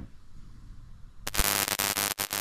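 Faint room tone, then a little over a second in, a sudden loud burst of static-like hissing noise that flickers and carries on.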